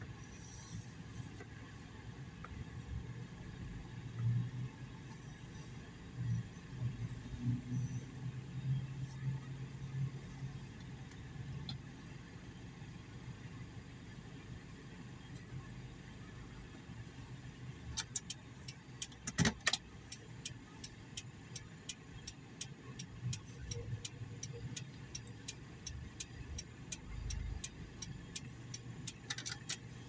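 Low, steady hum of a vehicle heard from inside a car cabin, with a few louder swells in the first third. In the last third a run of faint, evenly spaced ticks comes in, a little over two a second.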